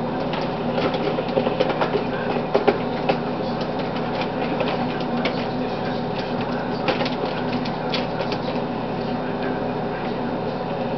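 A plastic container is handled and tipped over a small trash can. Its scattered clicks and knocks bunch up in the first three seconds and again around seven to eight seconds, over a steady background hum.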